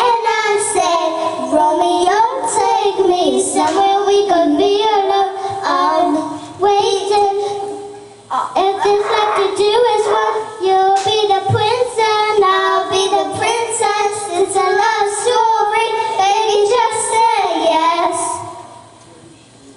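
Two young girls singing a pop song into microphones over a backing track, with a brief break in the singing about eight seconds in.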